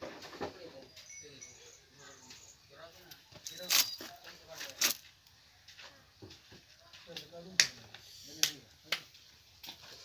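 Indistinct voices talking, broken by several sharp clicks or knocks.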